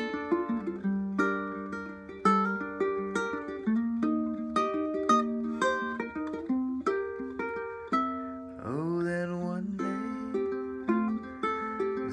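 Tenor ukulele played solo: a run of separate plucked notes that ring into one another, an instrumental passage with no voice.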